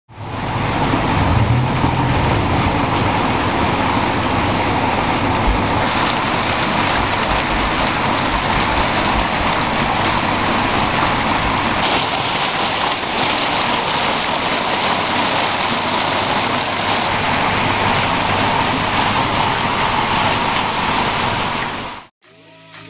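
Water falling steadily from a fountain, a loud continuous splashing rush like heavy rain, with a low rumble under it for the first few seconds. It cuts off suddenly at the end.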